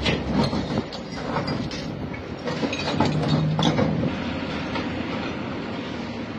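Demolition work by an excavator: irregular clanks and knocks of metal and debris over a running engine.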